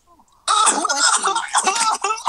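A person's loud, harsh, distorted vocal outburst through a phone's microphone, breaking in about half a second in and running on.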